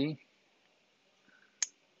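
A single short, sharp click about one and a half seconds in, during a near-silent pause after a man's speech ends.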